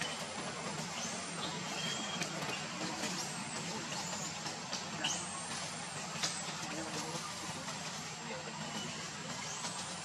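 Young monkeys wrestling in dry leaves, giving faint high-pitched squeals over a steady background hiss, with a couple of sharper squeaks about five and six seconds in.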